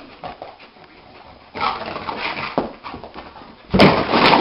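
Sleepwalking dog scuffling and stirring in its sleep, then a loud sudden thump near the end as it jumps into a wall.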